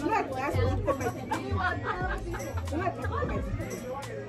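Women talking at a table, several voices in lively conversation, over background music with a steady bass line and beat.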